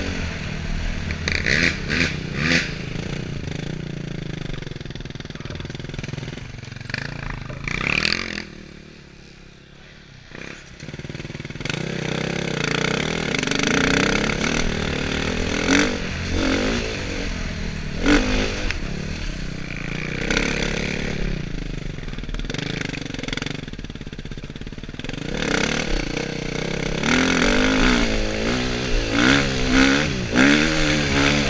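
Dirt bike engine being ridden, revving up and easing off with the throttle over rough ground. It falls quiet for a couple of seconds about a third of the way in, then picks up again and revs harder near the end.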